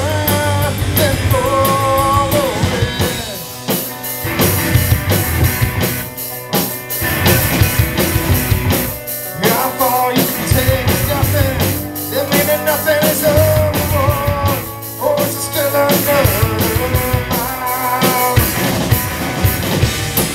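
Live rock band playing loud: electric guitars, electric bass and a drum kit, with lead vocals sung over them in phrases.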